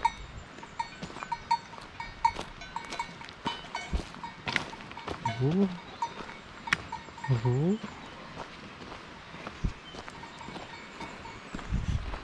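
Bells on grazing cattle clinking in short repeated rings, with two short low calls rising in pitch about halfway through.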